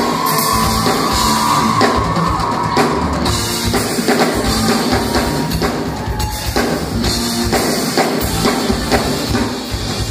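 Rock band playing live with a busy, prominent drum kit, a held pitched note from another instrument ringing over it for the first few seconds.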